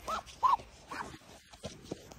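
White domestic duck giving three short calls in quick succession, the second the loudest, followed by faint handling rustles.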